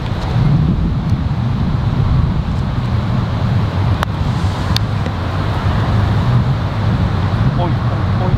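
A putter striking a golf ball on the green: one sharp click about halfway through, over a steady low rumble.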